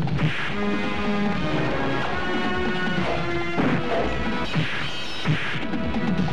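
Film fight sound effects: a few punch and crash hits, one at the start, one about halfway and one near the end, over a dramatic background score with held notes.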